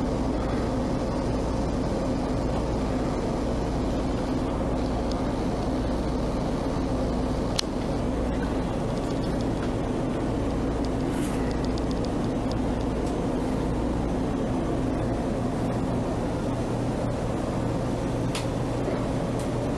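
Steady low mechanical hum of the motorhome's running machinery, heard from inside the coach, with one sharp click about seven and a half seconds in.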